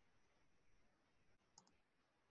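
Near silence, with one faint computer mouse click about one and a half seconds in.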